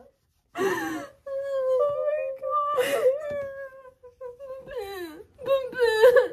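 Women crying with joy: a long, high, wavering wail held for about three seconds, with sharp gasping breaths around it and broken sobs near the end.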